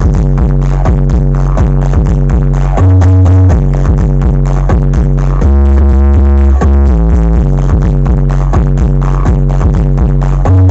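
Electronic dance music played loud through Brewog Audio's carnival sound system, a steady fast beat over heavy sustained bass notes. The bass swells louder twice, about three and six seconds in.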